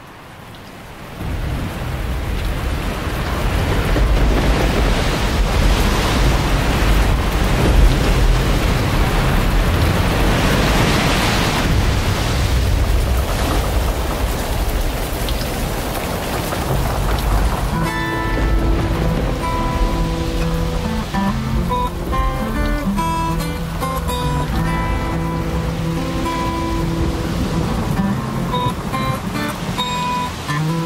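Heavy rain with a low storm rumble, swelling in at the start. A little over halfway through, an acoustic guitar starts picking notes over the rain.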